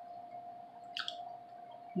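Quiet mouth sound while eating a french fry: one short click about a second in, over a faint steady tone.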